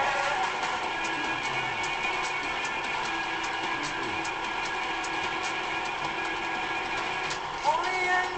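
A steady mechanical whir of a small motor, its pitch unchanging, with faint regular clicks.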